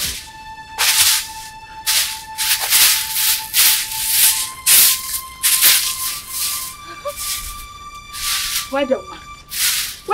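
Broom sweeping in repeated swishing strokes, roughly one a second, over background music with held tones; a short vocal sound comes near the end.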